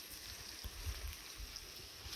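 Footsteps on a dirt path, soft low thuds a few times a second, over a steady high-pitched hiss of outdoor background.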